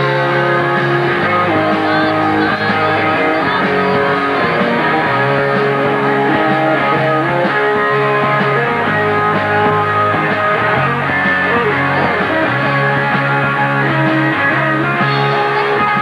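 Live punk rock band playing an instrumental stretch between sung lines, led by a single-cutaway Les Paul-style electric guitar over bass and drums. It is loud and continuous.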